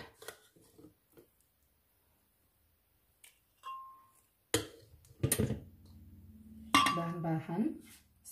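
A metal spoon knocking and clinking against a glass blender jug as food is spooned in. There are a few sharp knocks in the second half, and one short clink that rings briefly.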